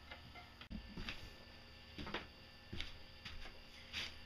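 Faint, irregular light clicks and taps, about six over four seconds, from a pencil and square being handled against a wooden board on a workbench while a line is marked.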